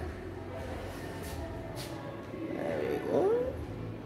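Low background room noise, with a short gliding vocal sound from a person about three seconds in.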